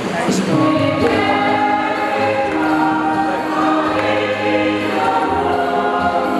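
Church choir singing a hymn, several voices holding long notes that move from one chord to the next every second or so.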